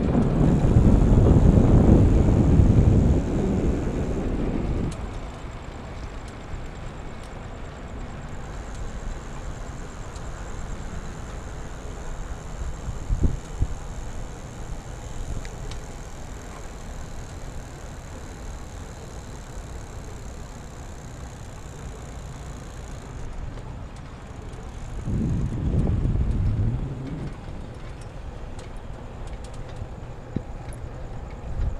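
Riding noise from a moving e-bike on a paved road: wind rumbling on the microphone, loudest for the first few seconds and again briefly about 25 seconds in, over a steadier, quieter rush of tyres and air. A faint high steady tone runs through most of it, and there is one short knock about 13 seconds in.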